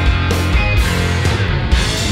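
Live rock played on an electric guitar and a drum kit, with drum hits falling steadily over sustained low guitar notes.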